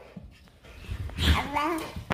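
A baby's brief wavering vocal sound, lasting under a second, starting about a second in after a quiet moment.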